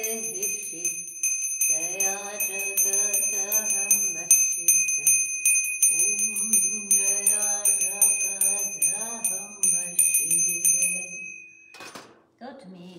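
Small brass hand bell (puja bell) rung rapidly and without pause, several strikes a second, until it stops shortly before the end. Voices sing in phrases throughout.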